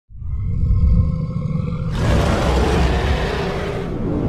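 Designed intro sound effect: a deep rumble with faint steady high tones over it, then about two seconds in a loud rushing whoosh swells in on top of the rumble.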